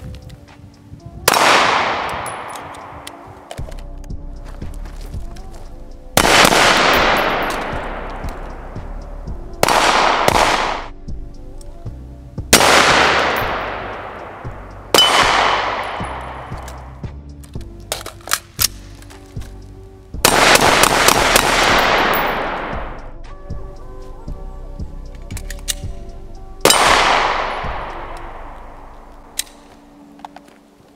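Handgun fired about eight times at irregular intervals, two of the shots in quick pairs; each sharp report is followed by a long fading tail.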